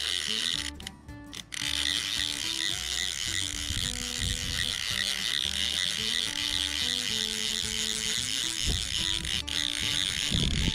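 Click-and-pawl fly reel clicking steadily as the angler cranks in line on a hooked fish, under background music. The sound dips briefly about a second in.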